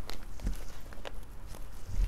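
Folded sarees being handled on a table: a few soft rustles and light taps, with a dull bump about half a second in and another near the end.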